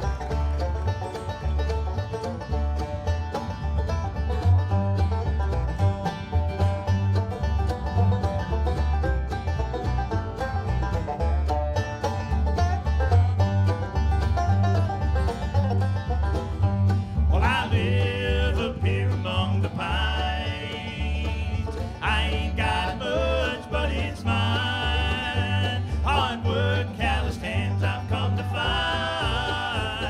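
Acoustic bluegrass band of banjo, mandolin, acoustic guitar and upright bass playing live. Singing comes in a little over halfway through.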